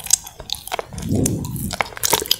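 Close-miked wet mouth sounds of eating a soft gummy candy: quick, irregular sticky clicks and smacks of tongue and lips on the gummy, with a low muffled swell of chewing around the middle.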